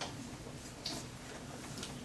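Quiet room tone with a few soft clicks, about one a second, the clearest near the middle.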